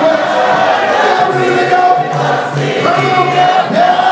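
Gospel singing: a male lead singer on a microphone with other voices singing along, holding long notes over low, steady bass notes.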